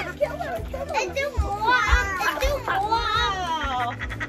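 Young children shrieking and shouting excitedly in play, their high voices loudest from about a second and a half in, with music playing underneath.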